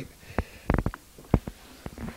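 A few soft knocks and thumps of people moving about and a handheld camcorder being carried through a doorway, with a quick cluster a little before halfway and the loudest knock just past it.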